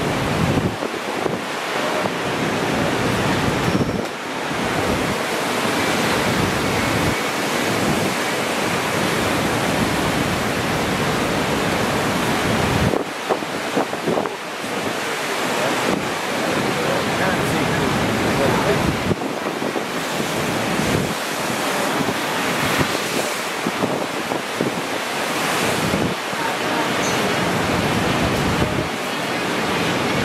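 Ocean surf breaking, a steady roar of wave noise, with wind buffeting the microphone in gusts.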